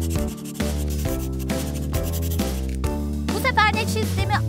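A pencil-scribbling sound effect, a rough scratching, over children's background music. A short warbling high sound comes near the end.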